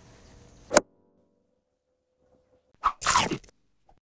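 Editing sound effects of a logo sting: faint background music ends on one sharp hit just under a second in, then after a silence a small click and a short swish near the end.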